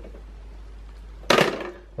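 One short clatter of hard plastic, just over a second in, as a toddler handles the lid and bin of a Bruder toy garbage truck.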